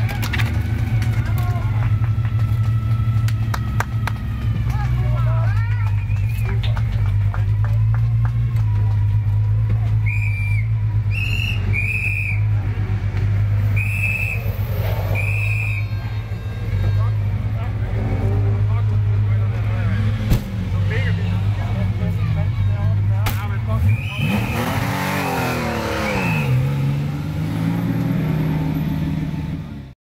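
Classic Porsche 911 air-cooled flat-six engine idling steadily during a pit-lane driver change, with a run of short high beeps in the middle. Near the end the engine note dips and rises as it is revved.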